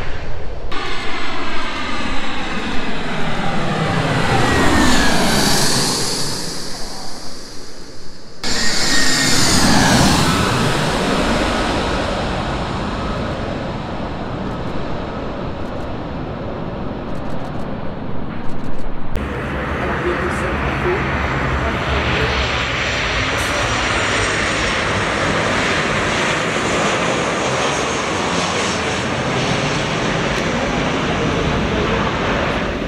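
Jet airliner engines passing close by, their pitch sweeping downward as the aircraft goes past. This breaks off suddenly twice and then gives way to a steady jet engine noise of a Boeing 737 at take-off power.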